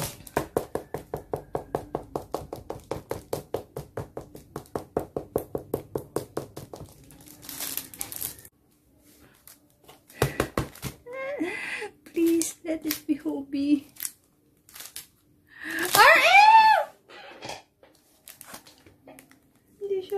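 Rapid knuckle knocking on a shrink-wrapped album box, about five knocks a second for some eight seconds. It is followed by plastic wrapping crinkling with a sharp crack, then a woman's voice murmuring and letting out a loud exclamation that rises and falls in pitch.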